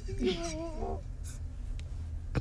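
A short wavering vocal sound from a person early on, then quiet studio room tone with a low steady hum and a faint brief rustle.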